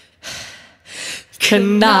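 A singer takes two short, sharp breaths into a microphone during a gap in the accompaniment, then his singing voice comes back in about one and a half seconds in.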